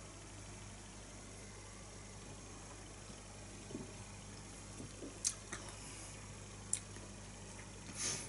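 Faint sipping and mouth sounds as beer is tasted: soft slurps followed by a few sharp lip smacks or clicks in the second half, over quiet room tone with a low steady hum.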